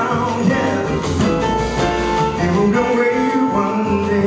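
Live jazz band playing, with saxophone, piano, upright bass and drums; a held melody line sounds through the middle over a continuous bass.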